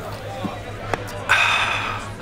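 A light click a little before one second in, then a loud breathy "ahh" from a man tasting a beer, a sigh of satisfaction.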